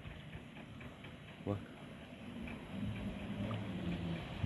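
Faint steady outdoor background noise, with a man saying one short word ("bak") about a second and a half in.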